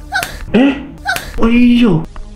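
A person's voice crying out in distress from the film's soundtrack: two long wailing cries that rise and fall in pitch, each with a sharp knock just before it.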